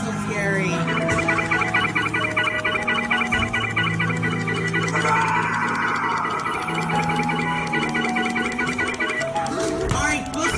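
Music with long held low notes under a fast, evenly repeating electronic figure higher up.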